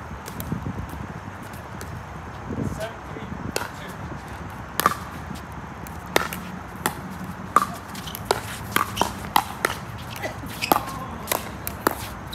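Pickleball rally: sharp pops of paddles striking the hollow plastic ball, about a dozen of them. They start singly about five seconds in and come in quicker runs near the end.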